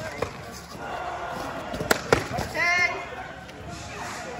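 Padded foam swords smacking during sparring: a sharp hit just after the start, then two quick hits close together about two seconds in, followed by a short high-pitched shout, over background crowd chatter.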